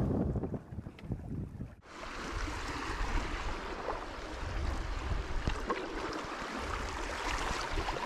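River water splashing and lapping against a paddled canoe, with wind gusting on the microphone; the sound drops out briefly about two seconds in, then runs on as a steady rush with a few faint knocks of the paddle.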